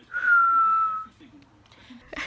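A woman whistles one long note that falls slightly in pitch, lasting about a second.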